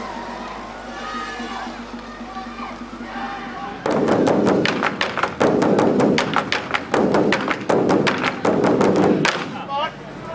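Large red Chinese barrel drums beaten by a drum troupe in a fast, loud run of strikes, starting suddenly about four seconds in and going on until just before the end.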